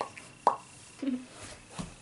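A single sharp pop about half a second in, the loudest sound here, with a short spoken word and a soft low thud after it.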